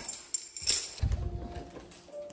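A door being unlatched and pushed open: two sharp clicks, then a low rumble with a faint thin squeak.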